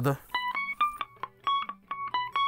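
Electric guitar with single notes picked one at a time, about half a dozen short notes with a brief pause about a second in. It is a melodic phrase that skips from note to note by intervals.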